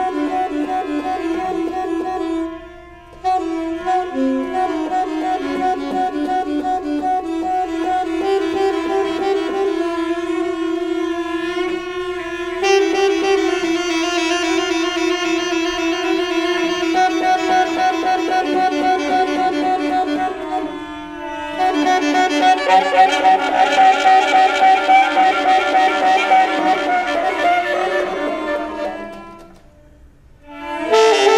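Alto saxophone and bowed cello playing a free improvisation, the saxophone holding long sustained notes over the cello. The music drops out briefly a few seconds in and again about two-thirds through, grows louder and denser after that, and fades out at the end.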